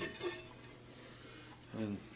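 A light metallic click as a turntable's metal platter is lifted off its spindle, with a smaller clink just after.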